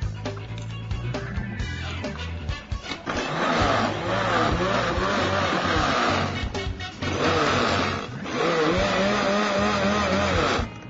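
Small electric mini food processor grinding raw cauliflower florets into fine rice-like crumbs, its motor whine wavering as the load changes. It starts about three seconds in and runs in three bursts with short breaks between them.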